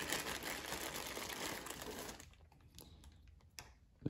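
A plastic bag rustling and small slugs clicking together as a hand digs 28-gauge shotgun slugs out of the bag. After about two seconds it drops to a few faint clicks as the slugs are handled.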